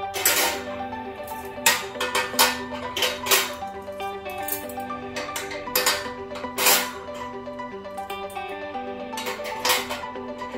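Background music with a plucked-string melody, broken by a few sharp, irregularly spaced metallic clinks as stainless-steel skewers are set down on a barbecue grill's wire rack.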